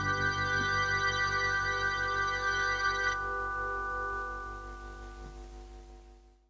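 Closing held keyboard chord with a slight pulse, its upper tones dropping away about three seconds in, then fading out.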